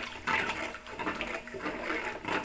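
Jaggery lumps and water being stirred and sloshed by hand in an aluminium pot, the lumps broken up so the jaggery dissolves into syrup.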